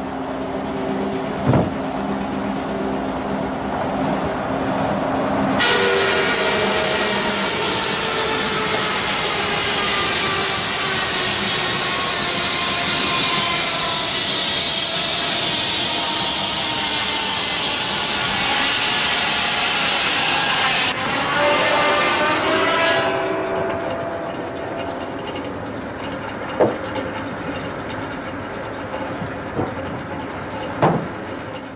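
Water-powered circular saw: the saw and its drive run with a steady hum, then about five seconds in the blade bites into a log and a loud cutting noise runs for about fifteen seconds before dying away. The machinery then runs on more quietly, with a couple of thumps near the end.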